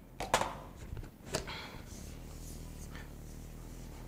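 A few light knocks and clicks of kitchen containers being handled on a counter while a cup of sugar is fetched, over a faint steady low hum in the second half.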